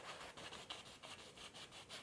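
Faint, repeated swishing strokes of a one-inch brush rubbing oil paint onto a canvas, several strokes a second.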